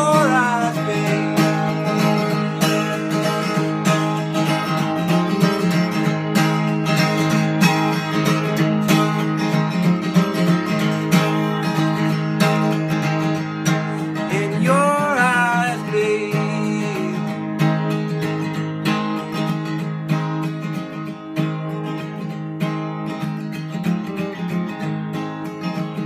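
Acoustic guitar with a capo played in a steady strummed rhythm as an instrumental outro, with a brief wordless vocal about halfway through. It gets slightly softer toward the end.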